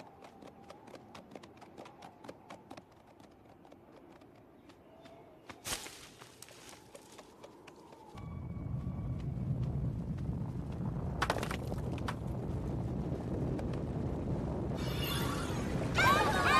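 Cartoon sound effects: light, quick hoof taps of ponies tiptoeing, with a sharp knock about six seconds in. About halfway through, a low, steady rumble of a rockslide starting up takes over and grows louder.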